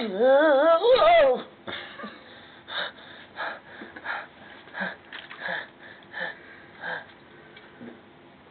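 A person's voice making a long, wavering strained whine, then a run of short breathy wheezes about every two-thirds of a second: comic effort and struggle noises.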